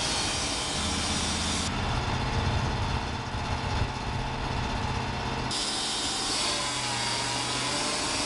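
Wood-Mizer LT35 hydraulic portable sawmill running steadily with its engine at work. The sound changes abruptly about two seconds in and again past five seconds.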